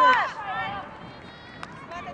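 A loud, high-pitched shout from the field that rises and falls in pitch right at the start, then fainter voices in the background and a single sharp click about one and a half seconds in.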